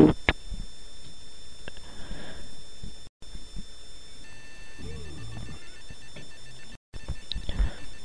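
Faint, steady electronic tones over a low background, with a second set of broken, beeping tones joining about halfway through. Twice the sound cuts out completely for a moment.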